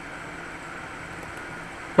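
Steady low hiss of room tone and microphone noise with a faint hum, and no distinct sounds.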